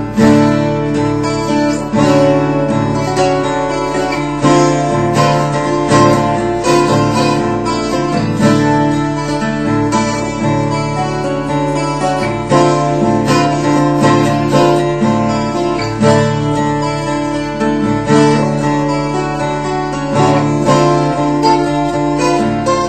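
Unplugged 12-string acoustic guitar playing an arpeggiated open-string piece in D, with picked notes ringing over low notes held underneath.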